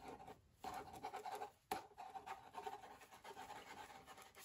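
Pen writing on paper, a run of short scratching strokes with brief breaks.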